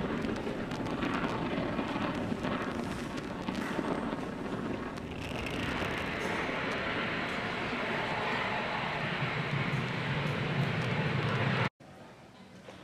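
Falcon 9 first stage's nine Merlin engines running during ascent shortly after liftoff, heard from the ground as a steady rumbling roar. The sound turns brighter about five seconds in and cuts off suddenly near the end.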